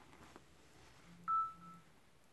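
A single short electronic-sounding beep, a clear high tone that sets in sharply and fades within half a second, comes a little past halfway. A faint low buzz sounds just before and after it, over the soft rustle of a cloth pipe bag being handled.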